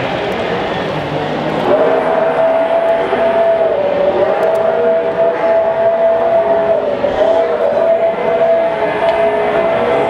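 HO-scale model freight train running past, with a steady whining tone that starts about two seconds in and dips slightly in pitch twice, over a background of crowd chatter.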